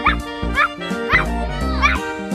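Four short, high puppy-like yips, about one every half second, over background music.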